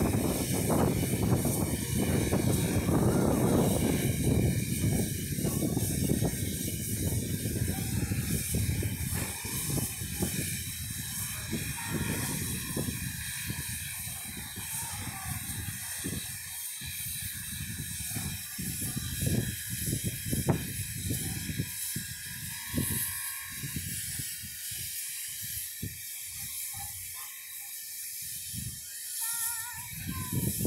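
Steam locomotive hissing steam, loudest for the first ten seconds or so and then fading, with irregular short gusts of sound after that.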